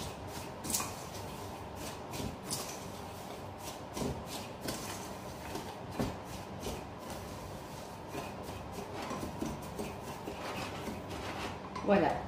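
Dry medium-grain couscous being mixed with olive oil in a bowl: an irregular run of short rustling and scraping strokes.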